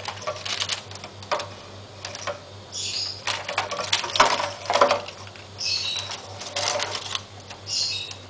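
A lutino peach-faced lovebird pushing a cardboard tube around a paper-lined plastic tray: irregular tapping, knocking and paper rustling, with three short high-pitched calls from the bird, the last near the end.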